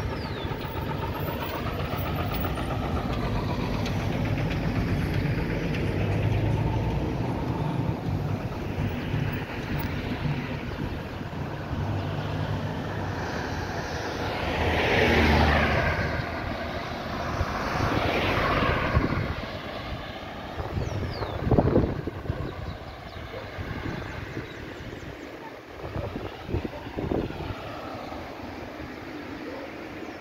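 Road traffic passing close by: a low, steady rumble of engines from slow-moving vehicles, including a minibus. Two cars pass near the middle with a swell of tyre and engine noise. There is a short knock about two-thirds of the way in, and the traffic is quieter towards the end.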